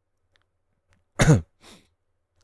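A man clears his throat: one sharp, loud cough-like burst with a falling pitch a little over a second in, followed at once by a shorter, softer one.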